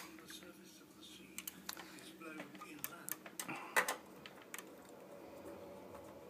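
Scattered light clicks and taps of fingers and a screwdriver on the metal chassis and expansion cards of a vintage 486 server as the cards are worked loose. The sharpest click comes about four seconds in.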